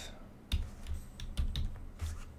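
Irregular clicking from a computer keyboard and mouse, about eight sharp clicks starting about half a second in, with a few dull thumps among them.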